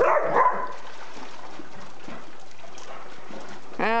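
A dog barks loudly once at the very start, over steady background hiss.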